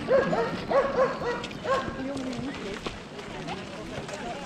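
A dog barking, about five short barks in quick succession in the first two seconds, over people talking.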